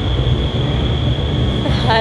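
Vertical indoor skydiving wind tunnel running: a loud, steady rush of air and fan rumble, with a thin high whine held above it.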